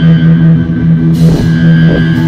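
Live rock band playing loud, with a guitar chord held steady over drum kit hits.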